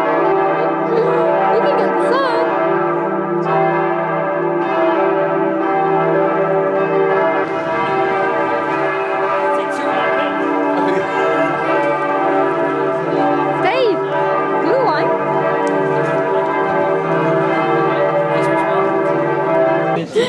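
Church bells pealing, several bells ringing together in one continuous overlapping peal.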